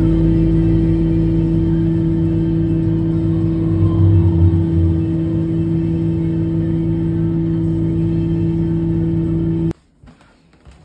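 A tow truck's engine running steadily, heard from inside the cab as a loud, even drone with a low rumble. The rumble swells briefly about four seconds in, and the sound cuts off suddenly near the end.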